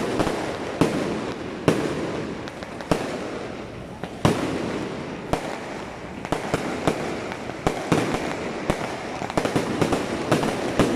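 Fireworks salute going off: a string of sharp bangs at irregular intervals, roughly one a second, over a steady hiss of burning and crackling.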